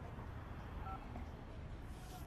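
A single short two-tone smartphone keypad beep about a second in, as a call is being dialled, over a low steady hum.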